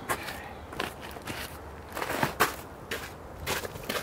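Footsteps crunching on snowy ground, a series of uneven steps, the loudest a little past the middle.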